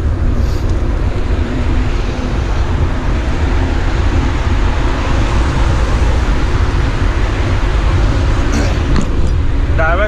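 Wind rumble on the microphone of a handlebar-mounted camera on a moving bicycle, with road traffic going past alongside.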